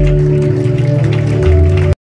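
Worship band holding sustained closing chords at the end of a song, with scattered clapping from the congregation over it; the sound cuts off abruptly near the end.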